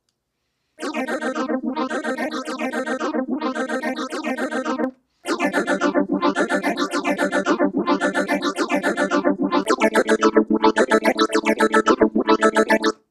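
PPG Phonem vocal synthesizer playing a chord of synthetic sung syllables, chopped into a fast tempo-synced stream of about five syllables a second, with the brightness swelling and dipping every second or so. It starts about a second in, breaks off briefly near the middle, then resumes.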